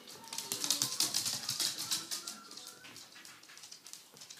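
Small dogs' claws clicking and scrabbling rapidly on a hardwood floor as they play and run, densest and loudest in the first half.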